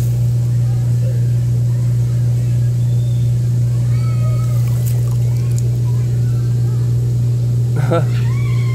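A steady low hum, unchanging, with faint wavering voice-like sounds in the background.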